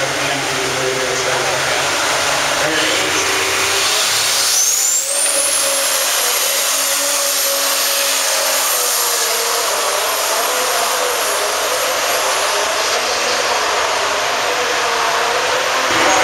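Turbocharged pulling tractor making a pull: its turbo whine climbs sharply about four seconds in, then holds at a high, steady pitch over the engine as it runs down the track.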